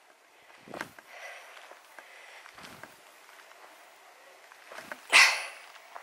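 Footsteps going down grassy earth steps, a few soft thuds, then a loud, short breathy huff about five seconds in.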